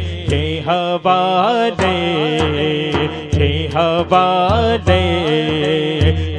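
A male voice sings a naat, an Urdu devotional poem, through a microphone and PA. The vocal line is ornamented and wavering, with long held notes, over a low pulsing backing.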